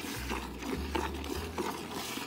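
Hand-milking a cow into a metal bucket: streams of milk squirting from the teats into the pail and the milk already in it, alternate hands giving a quick, even rhythm of a few squirts a second.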